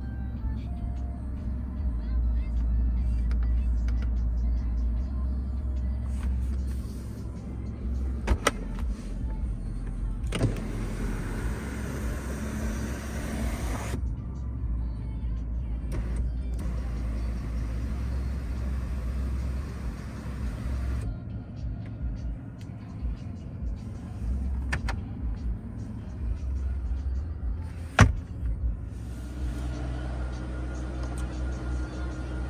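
Cabin sound of a 2007 Mercedes-Benz S600 with its V12 idling as a steady low rumble. A few sharp clicks of controls are heard, and about ten seconds in an electric motor runs for about four seconds as a power-operated feature is worked.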